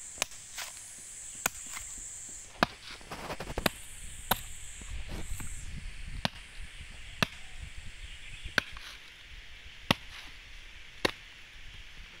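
A large knife chopping into the fibrous husk of a mature coconut resting on a wooden stump, to split the husk open. The blade lands in sharp single strikes, one about every second to second and a half, about ten in all.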